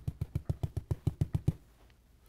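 Oil-painting fan brush tapping quickly against a paint surface in an even run of about seven taps a second, which stops about a second and a half in.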